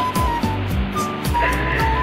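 Classical acoustic guitar strummed in a steady rhythm, chords ringing on.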